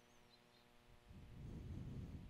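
Near silence: a faint steady hum, with a soft low rumble in the second half.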